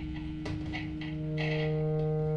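Free-improvised experimental music: a steady low drone with scattered small clicks and scrapes, and one sharp click about half a second in. About a second and a half in, higher sustained tones join the drone.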